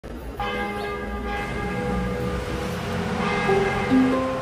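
Church bell ringing: several strikes, each tone ringing on and slowly fading, with a new strike a little after three seconds in. Plucked music begins right at the end.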